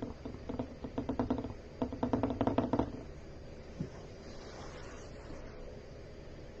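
Paintbrush knocked rapidly and rhythmically against a hard surface in two bursts of about a second each, about nine light knocks a second, followed by one faint knock.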